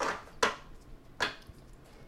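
A deck of tarot cards being shuffled by hand: three short, crisp card slaps in the first second and a half, then only faint handling.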